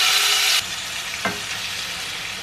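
Marinated chicken pieces sizzling as they go into hot olive oil in a frying pan. The sizzle is loud at first and drops to a quieter, steady sizzle a little over half a second in.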